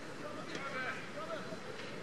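Faint voices of people calling out, with a few light clicks over a steady outdoor background.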